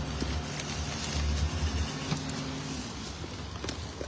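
A steady low motor hum over a deeper rumble, the hum stopping about three quarters of the way through, with plastic trash bags rustling as they are handled.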